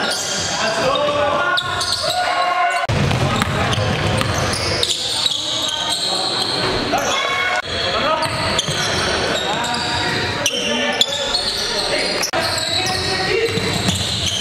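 Basketball game sound in a gym: a ball dribbling on the hardwood court and players' indistinct voices calling out, echoing in the large hall. The sound breaks off abruptly a few times where clips are cut together.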